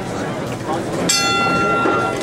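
Boxing ring bell struck once about a second in, ringing for about a second to signal the start of a round, over crowd chatter.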